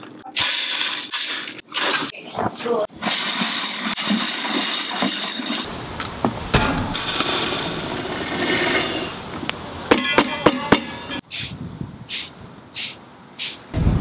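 Dry coffee beans pouring with a rattling hiss: green beans running from a sack into a stainless steel pot. After a cut about six seconds in, roasted beans are tipped from a hand-cranked drum roaster into a metal mesh strainer.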